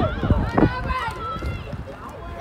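Several high children's voices shouting and calling out, overlapping, with no clear words.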